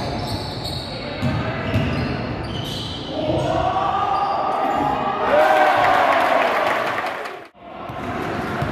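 Basketball game on a wooden sports-hall court: the ball being dribbled and sneakers squeaking as play moves up the court, then players and spectators shouting from about three seconds in. The sound drops out abruptly for a moment near the end.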